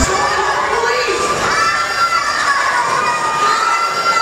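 A crowd of children cheering and screaming, many high voices at once.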